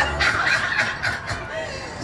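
A man laughing loudly into a handheld microphone, a quick run of rapid 'ha-ha' pulses through the PA.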